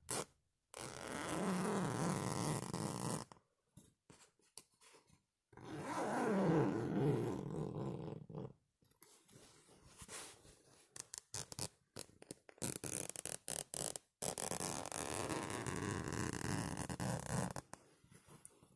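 Fingernails scratching and rubbing a flower-printed cloth close to the microphone, as ASMR scratching sounds. Three long stretches of continuous rubbing, each about three seconds, are broken up by quicker, patchy scratches and clicks.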